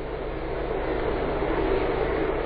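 Steady rushing background noise with a low hum underneath, slowly growing a little louder: the room and recording noise of an old lecture tape heard in a pause in the talk.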